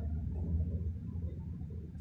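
Steady low rumble of room background noise, with no other distinct sound.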